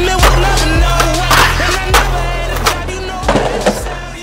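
Hip hop music with a heavy bass line, over skateboard sounds: wheels rolling on concrete and the sharp clacks of the board popping and striking a rail. The bass drops out near the end.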